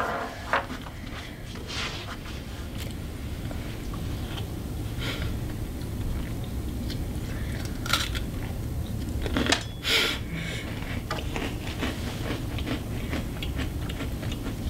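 A person chewing an Oreo sandwich cookie, with a few short crunches scattered through, over a steady low room hum.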